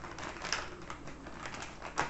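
Plastic packaging crinkling and clicking as it is handled, with a sharper click about half a second in.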